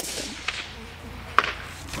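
A single shot from a suppressed bolt-action rifle right at the start, its report echoing away over about a second. About a second and a half later comes a short, sharp report from downrange: the bullet striking the steel target plate.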